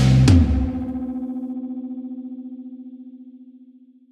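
Closing chord of an outro music sting: a distorted electric guitar chord struck hard, then ringing out and fading away over about four seconds with a fast wavering pulse.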